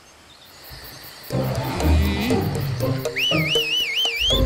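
A cartoon dinosaur roar sound effect: deep and loud, coming in about a second in after a near-quiet start. A high, wavering whistle-like tone joins near the end.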